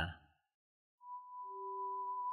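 A brief silence, then a pure steady electronic tone begins about halfway in, with a lower steady tone joining near the end. These are the opening tones of synthesized background music.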